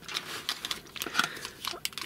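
A clear plastic packaging bag being handled and crinkled, a run of irregular small crackles, as hands lift it out of a cardboard box.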